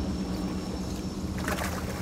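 A released speckled trout splashing as it kicks away at the water's surface beside the boat, a short splash about a second and a half in, over a steady low hum from the boat's motor.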